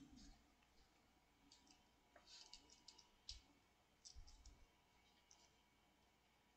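Near silence: faint room tone with a scattering of small, quiet clicks in the middle.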